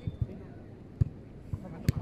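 A beach volleyball being struck by players' hands and forearms during a rally: sharp slaps, the loudest about a second in and another just before the end, with a fainter one shortly after the start.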